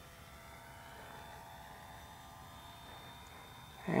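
Faint, steady drone of a distant radio-control model airplane's motor and propeller overhead, slowly fading.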